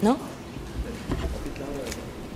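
A person's voice: a short rising vocal sound at the start, then faint talk.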